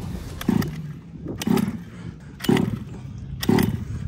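OBR full-mod 30.5cc Zenoah two-stroke engine of a 1/5-scale HPI Baja 5T being cranked to start: four short cranking bursts about a second apart, with quieter gaps between, as it is not yet running steadily.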